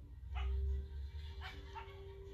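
A dog whimpering softly: three short whimpers within two seconds, over a low rumble.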